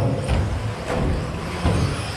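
Electric 1/10-scale RC stadium trucks racing on an indoor track: the whine of their 13.5-turn brushless motors mixed with tyre and chassis noise.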